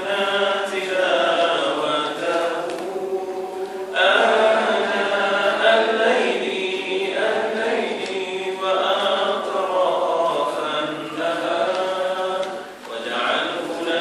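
A man's voice chanting an Arabic prayer in long, slowly bending melodic phrases, with short pauses for breath.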